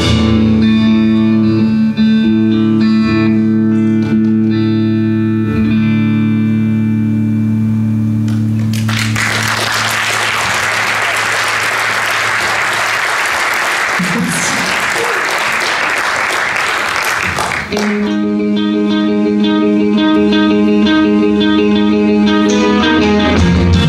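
Live rock band playing electric guitar, bass and drums, with long held chords. About nine seconds in, a loud noisy wash takes over for several seconds before held guitar notes return near the end.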